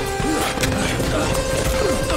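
Action film score with a held note, with a sharp hit from the fight about two-thirds of a second in.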